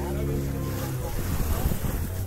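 A boat's engine runs with a steady drone. About a second in it gives way to wind buffeting the microphone and water rushing past, as heard from aboard a moving boat.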